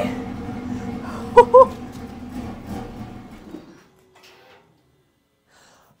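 BMW B58 inline-six idling on the fuel left in the line after the fuel supply was disconnected, then dying out abruptly nearly four seconds in, followed by near silence. Two short loud notes sound about a second and a half in.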